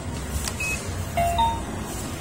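Arcade hall din with a steady low hum, and a few short electronic beeps from about half a second to a second and a half in, from the claw machine's card reader as a game card is tapped on it.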